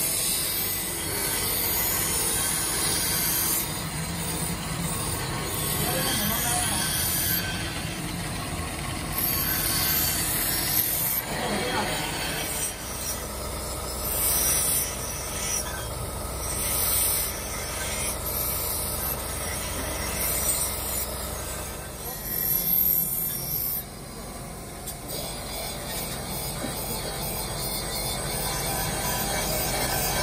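Steel being ground on a pulley-driven abrasive belt grinder: a steady rasping, screeching grind over the machine's running, its level swelling and dropping in stretches.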